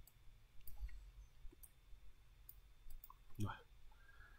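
A few faint, scattered computer mouse clicks, with a brief murmur from a voice about three and a half seconds in.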